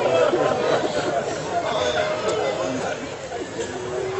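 Speech: a man speaking, with other voices chattering.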